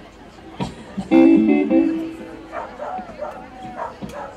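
Amplified acoustic guitar: a short strummed chord about a second in that rings for about a second, the loudest sound here, preceded by a couple of clicks. Voices talking follow.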